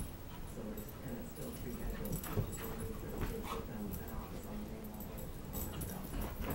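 Dogs play-fighting: a run of low, wavering play growls and whines, with short scuffling clicks throughout.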